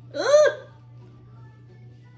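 A person's short vocal exclamation, "uh!", lasting about half a second, its pitch rising then falling. After it there is only a low steady hum.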